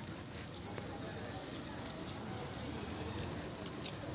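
Outdoor background noise: indistinct distant voices over a steady hum, with scattered light clicks and taps.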